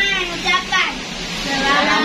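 A woman speaking, then several children's voices starting up together about a second and a half in, the start of a children's song.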